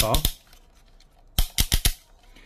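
Plastic ratchet hip joints of a JoyToy 1:18 Warhammer 40K Venerable Dreadnought action figure clicking as the legs are swung outward. There are a few quick clicks at the start, then a run of about five clicks in half a second near the end.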